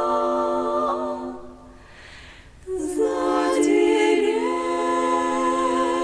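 Female vocal quartet singing a cappella in close harmony. A held chord fades out, there is a short breath pause about two seconds in, and then a new sustained chord enters.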